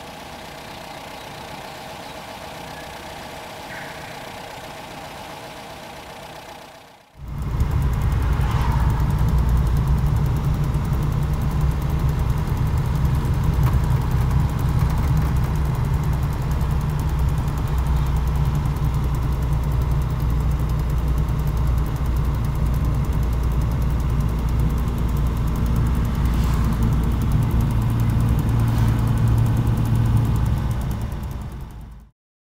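A 1963 Datsun Bluebird 1200's engine, reconditioned, idles steadily. About seven seconds in the sound cuts to a much louder, steady low rumble of the same engine and the road, heard from inside the cabin as the car drives along.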